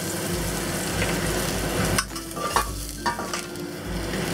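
Minced garlic sizzling in hot oil in a wok over medium-high heat: a steady frying hiss that eases somewhat about halfway through.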